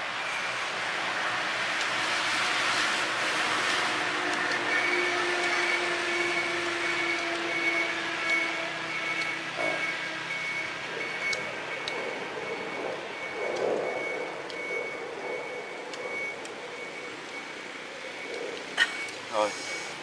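A motor vehicle runs nearby with a high-pitched beep that repeats steadily from about five seconds in until near the end, like a vehicle's warning alarm. A few sharp knocks come near the end.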